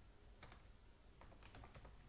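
Faint computer keyboard keystrokes: one key about half a second in, then a quick run of several keys in the second half.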